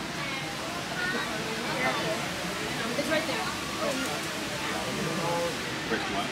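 Background chatter of other people's voices over a steady hiss of ambient noise, with no close voice.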